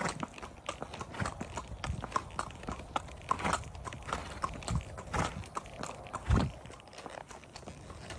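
Horses' hooves clip-clopping at a walk on a paved road, irregular sharp clicks several times a second. A louder low thud comes about six seconds in.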